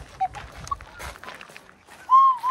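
Footsteps crunching on a gravel path: a run of short, irregular crunches that thin out toward the end.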